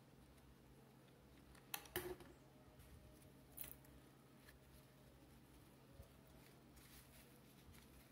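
Near silence, with a few faint short clicks and rustles around two seconds in and again a little later, from hands handling a ribbon bow while gluing it.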